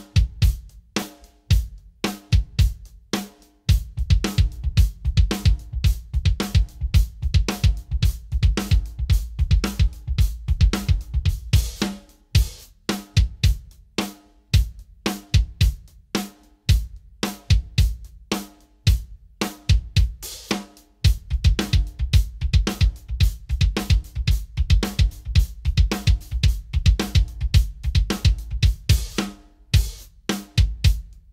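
Drum kit played in repeated passes of the same groove: bass drum, snare, hi-hat and cymbals, with short breaks between passes. Each pass uses a different Low Boy custom bass drum beater, among them wool-covered, leather-covered and plain wood. The wool gives a very soft sound and the wood more smack, though the differences in sound are very slight.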